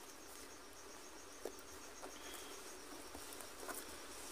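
Faint background insects chirping in a steady, high, pulsing trill, with a few soft clicks.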